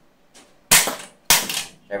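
Spring-powered Dart Zone Storm Squad foam dart blaster firing: a sharp snap about two-thirds of a second in, then a second sharp knock about half a second later.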